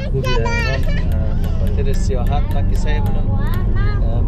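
A voice over music playing, with the steady low rumble of road and engine noise inside a moving car's cabin.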